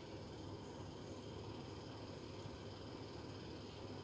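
Faint, steady room tone: a low even hiss with no distinct sound events.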